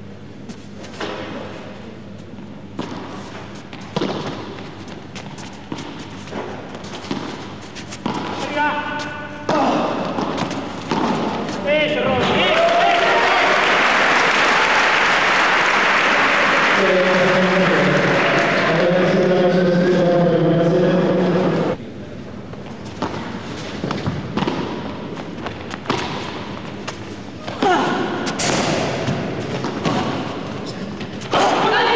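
Sharp thuds of a padel ball off rackets and court walls. About twelve seconds in comes a loud, steady burst of crowd noise with shouting voices lasting about ten seconds, then more thuds.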